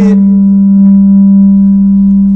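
Loud, steady, low electronic hum from the lecture's microphone sound system, holding one pitch without change.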